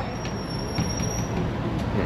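Street traffic noise, with a high, thin squeal that starts just after the beginning and lasts about a second.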